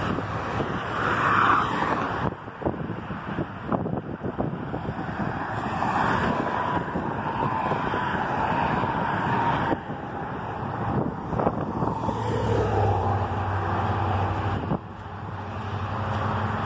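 Traffic on a busy multi-lane road, cars passing with steady tyre and engine noise. Near the end a lower, louder engine drone rises from a passing vehicle and cuts off.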